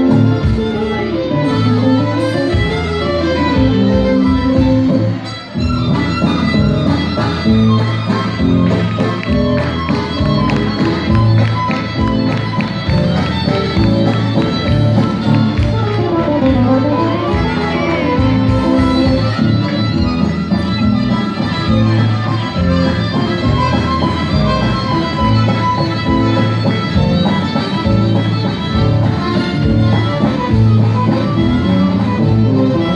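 Live band playing, led by fiddle with acoustic guitar, accordion and drum kit, with a short dip about five seconds in.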